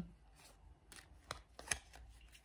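Three faint, sharp clicks, about half a second apart, the last the loudest.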